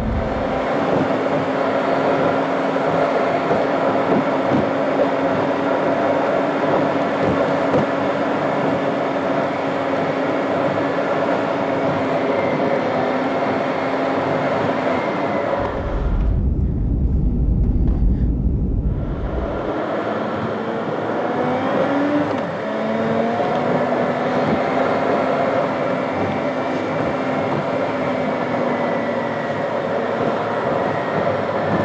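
A car driving along a road, with steady engine and tyre noise. For a few seconds past the middle the sound turns into a low, muffled rumble, as heard from inside the cabin.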